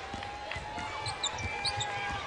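Basketball dribbled on a hardwood court in a series of low thuds, with a few short high squeaks of sneakers about a second in.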